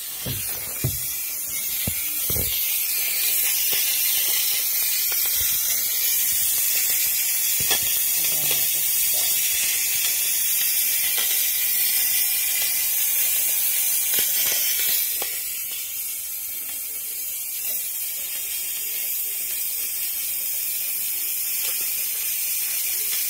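Steam radiator air vent valve hissing steadily as steam escapes from it instead of the vent closing. The owner is unsure whether the valve or the radiator itself is at fault. A few knocks come in the first couple of seconds, and the hiss eases a little after about 15 seconds.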